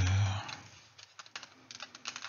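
A man's drawn-out hesitation sound trails off, then a few faint, scattered light clicks follow in a quiet stretch.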